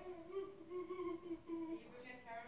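A girl humming softly with her mouth closed, a few held notes that step up and down in pitch.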